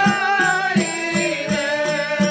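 A Rajasthani devotional bhajan: a man singing over a harmonium's held chords. A hand-played barrel drum, with a bright jingling percussion, keeps a steady beat of a little under three strokes a second.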